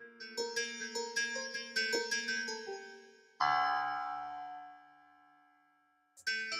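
Parsec 2 spectral synthesizer playing a synthesized piano-style patch: a quick run of bright, bell-like notes, then a louder chord about three and a half seconds in that rings out and slowly fades away.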